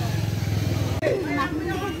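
A vehicle engine running steadily close by for about a second, breaking off suddenly, followed by people talking over street noise.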